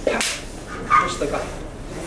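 A man speaking, with two sharp, loud syllables.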